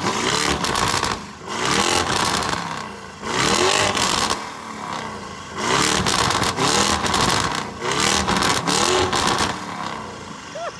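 Lamborghini Urus's twin-turbo V8 revved hard about five times in quick succession, each rev climbing and dropping back, through an exhaust taken for a custom one.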